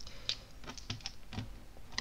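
Light, irregular small clicks and taps of a plastic tube of glitter primer and a makeup brush being handled.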